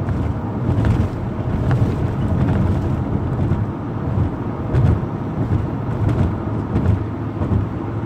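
Car interior rumble while driving: a steady, low drone of engine and road noise heard from inside the cabin, with a few faint ticks.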